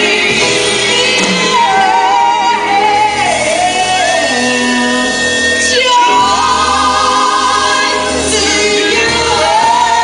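Live gospel-style singing of a Christmas song by a woman, with grand piano accompaniment; she holds one long note near the middle. A man's voice joins her about six seconds in.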